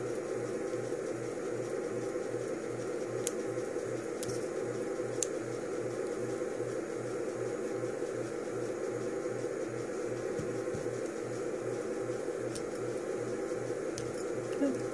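Steady mechanical background hum with a low throb pulsing about twice a second, and a few faint ticks.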